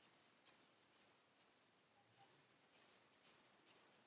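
Near silence, with faint scratchy rustles of yarn being wrapped around a plastic pom-pom maker. There is one slightly louder brush near the end.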